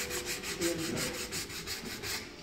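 A sanding block rubbed in quick, even back-and-forth strokes over the edges of a chalk-painted wooden cigar box. The strokes distress the fresh paint so the wood shows through at the corners.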